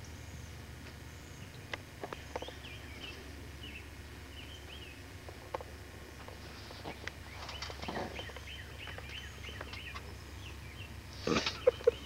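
Birds chirping faintly in short repeated calls, with scattered clicks and knocks and a steady low hum underneath; a loud voice breaks in near the end.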